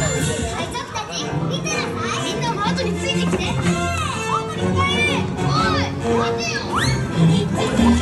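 Dark-ride show audio: many children's voices shouting and whooping in short rising-and-falling calls over a music track with a steady bass line.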